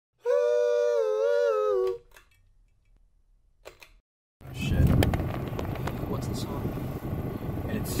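A single held, slightly wavering note lasting about a second and a half opens the clip, then stops. After a short silence, the low rumble of a car's interior sets in, with scattered small clicks.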